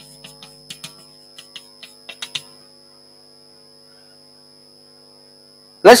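Chalk writing on a blackboard: a quick run of light taps and clicks for about two and a half seconds, then stopping. A steady electrical hum runs underneath.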